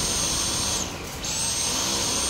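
Dyson V10 cordless stick vacuum motor running with a steady high whine, dipping briefly in pitch and loudness about a second in and then winding back up. It is running on by itself and the trigger will not switch it off, a fault the man puts down to a short.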